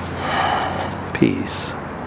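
A man's long, audible breath out through the mouth, swelling and fading over about a second: the release breath that closes a round of tapping. A short murmured sound with a hiss follows near the end.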